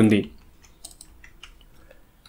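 A man's speech ends just at the start, followed by a few faint, scattered clicks of a computer keyboard.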